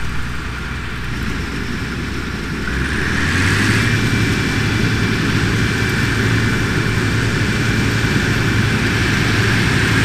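Gleaner F combine running, a steady engine drone that rises in pitch and gets louder about three seconds in, then holds steady with a faint whine over it.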